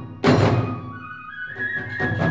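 Kagura ensemble music: a single loud stroke of drum and hand cymbals about a quarter second in rings away, while the bamboo flute holds a high note. Rapid drumming starts again near the end.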